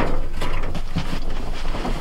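Handling noise from a small steel wood stove being worked onto its base: a continuous scraping rustle with light knocks and ticks.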